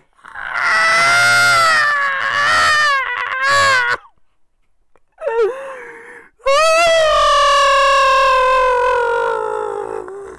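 A man's high-pitched, helpless laughter: two long cries, the first wavering up and down, the second held and slowly falling in pitch, with a short gasp between them.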